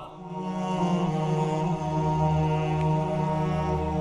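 Closing background music fading in at the start: a steady low drone with long-held tones above it.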